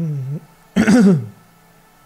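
A man's voice: a held hum-like vocal sound that ends just after the start, then one short, loud throat-clearing about a second in.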